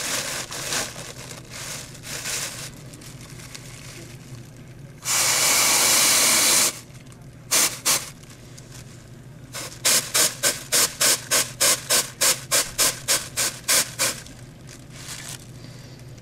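A paper bag crinkling and rubbing close against the microphone. Irregular rustling comes first, then a loud steady rush for about a second and a half around five seconds in. Near the end comes a run of quick, even crinkles, about three a second.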